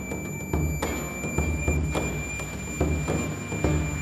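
Chinese bamboo dizi flute playing a melody over a large Chinese barrel drum beaten in a steady pulse of strokes, about three a second.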